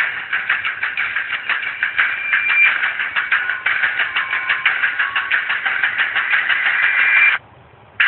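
Tinny, low-fidelity soundtrack of a TV show's closing credits playing back, dense with rapid irregular hits, cutting off abruptly about seven seconds in.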